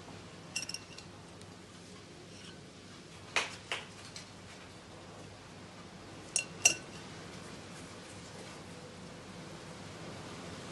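Metal measuring spoon clinking against a glass mixing bowl while scooping cake-pop mixture. A few short sharp clinks come in pairs: soft ones near the start, louder ones in the middle, and the loudest pair near the end.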